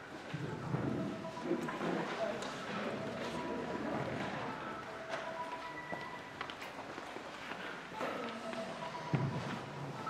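Faint murmur of voices in a large hall, with the footsteps of people walking across the floor.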